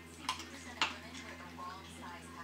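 Dog-training clicker clicking twice, sharp and short, about a third of a second and just under a second in. The clicks are being 'charged': each is paired with a treat so the dog learns that the click means a reward.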